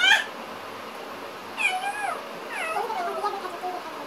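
Meowing: a short call right at the start, then two longer meows that fall in pitch, about a second and a half and two and a half seconds in.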